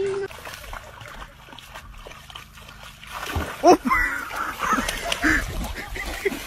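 A dog splashing and thrashing in shallow water, with excited human voices calling out over it during the second half.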